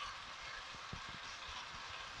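Faint, steady sizzle of diced meat and vegetables frying in oil in a pot, with a few faint ticks.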